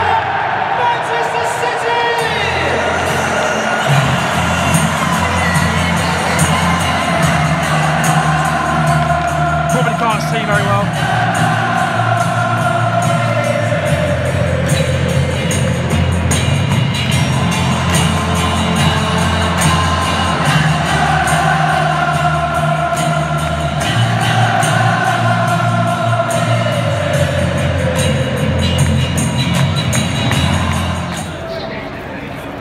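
Music played over a stadium public-address system, with a steady bass line and a sung melody, above the noise of a large football crowd.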